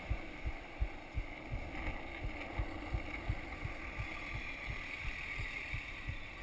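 Skateboard wheels rolling over asphalt: a steady rumble with short low thuds repeating about two to three times a second.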